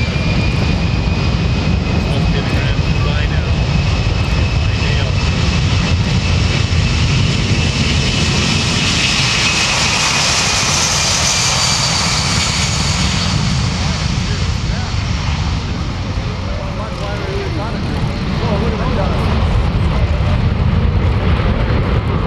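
Boeing C-17 Globemaster III's four turbofan engines at takeoff thrust during a short-field takeoff roll: a loud, steady jet roar with a high whine, swelling to its loudest about halfway through as the aircraft passes.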